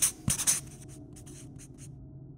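Marker pen writing on a white board in a quick run of short strokes, loudest in the first half second, then fainter strokes that stop shortly before the end.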